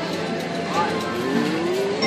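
Casino floor din: a steady wash of background noise with people talking and sounds from nearby machines, and a rising tone through the second half.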